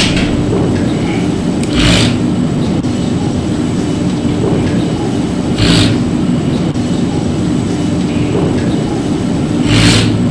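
Passenger elevator car travelling up its shaft: a loud, steady rumble and hum, with a brief rushing whoosh about every four seconds.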